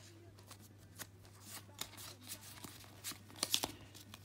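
Pokémon trading cards being handled in the hands: soft rustles and a scatter of light clicks and snaps as cards slide and are shuffled, with a few sharper snaps near the end.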